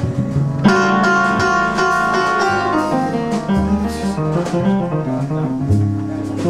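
Live small-group jazz: piano chords ringing over a plucked upright bass line, with light cymbal strokes. A new chord strikes a little under a second in.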